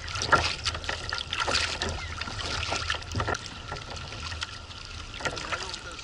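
Kayak paddle strokes splashing at an irregular pace and choppy water lapping against the kayak's hull, over a steady low wind rumble on the microphone.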